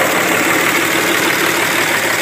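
A 5.9 L Cummins common-rail inline-six turbodiesel, fitted with a K&N intake, idling steadily in a 2005 Dodge Ram 3500, heard up close in the open engine bay.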